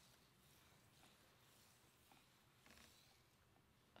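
Near silence: room tone, with a few faint soft sounds.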